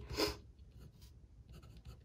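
Pen writing on a sheet of paper on a desk: faint, irregular strokes as a short word is written out.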